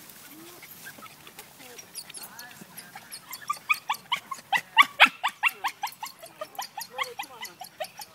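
Jack Russell terrier whining and yipping in rapid, short, high-pitched cries, several a second, starting about two seconds in and growing louder: the excited cries of a terrier working a rat hidden in a bucket.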